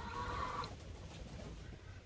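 A faint, brief bird call near the start from penned game birds, then low background noise.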